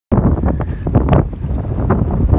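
Heavy wind buffeting the microphone on an open boat, a loud low rush that surges unevenly in gusts.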